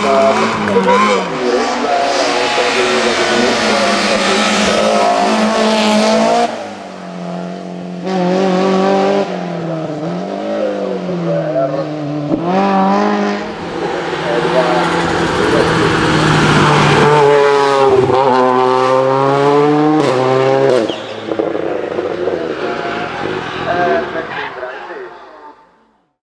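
Rally cars on a hillclimb revving hard through bends, one car after another. Engine pitch rises and falls with gear changes and lifts, and the sound switches abruptly between cars several times. It fades out near the end.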